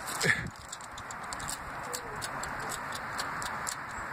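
A person's brief laugh, followed by a steady outdoor hiss with faint, irregular light clicks.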